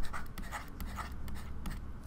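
Stylus scratching on a pen tablet in quick, short, irregular strokes as a word is handwritten.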